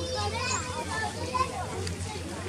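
Indistinct background voices of people, including a child's high voice, rising and falling in short phrases with no clear words.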